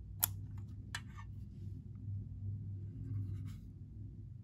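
Vintage Ronson PAL cigarette case/lighter being closed: two sharp metal clicks a little under a second apart, the first the louder, then a brief scratchy rustle of the metal case being handled near the end, over a low steady hum.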